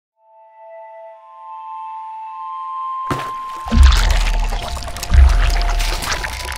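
Intro logo sting: a few held tones swell for about three seconds, then a sudden splash-like rush of sound cuts in over music, with two deep bass hits about a second and a half apart.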